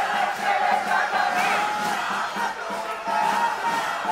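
Large protest crowd shouting and chanting, many voices together in a continuous din.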